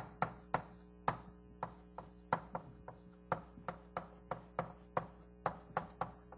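A run of sharp, irregular taps from writing on a board, about three a second.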